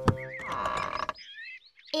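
Cartoon sound effect of a wooden door creaking open, a wavering squeak in the second half, after two quick clicks at the start. Soft background music plays underneath.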